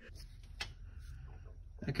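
A quiet pause over a low, steady background hum, with one faint click about half a second in; a man says "okay" near the end.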